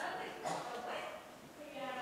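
Quiet speech: a voice speaking softly, with short phrases about half a second in and again near the end.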